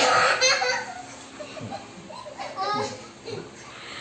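Children laughing and chattering, loudest in the first half second and then quieter.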